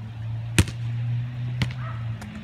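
Two sharp knocks about a second apart, the first the louder, over a steady low hum.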